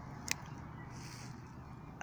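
Quiet outdoor background noise with one short sharp click about a third of a second in.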